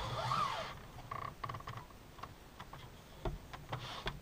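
A pleated RV window shade being pushed up by hand: a short rustling slide at the start, then a few faint clicks.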